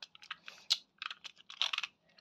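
A run of small, irregular plastic clicks and rattles: Beyblade spinning tops and their launchers being handled and readied for a launch.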